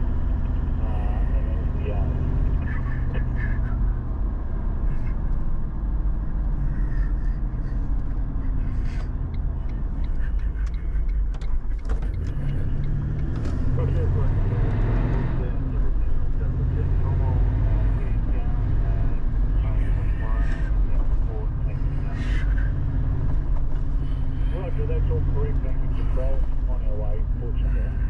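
Steady low engine and road rumble heard from inside a moving vehicle's cabin, with faint snatches of emergency-service radio voices now and then.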